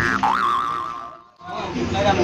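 Cartoon "boing" sound effect: a springy tone that rises in pitch, wobbles and fades out a little over a second in.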